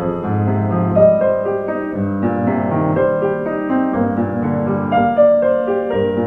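Solo piano playing a song accompaniment without vocals: a continuous flow of notes over a bass line.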